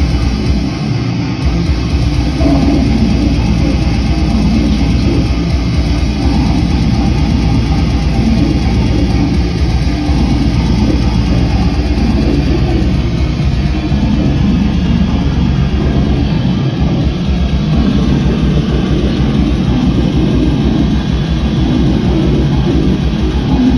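A live band playing loud, heavy electric-guitar music, a dense unbroken wall of sound with a strong bass end.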